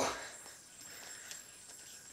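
Faint sounds of a yo-yo being thrown and spinning on its string, with a light click about a second and a quarter in.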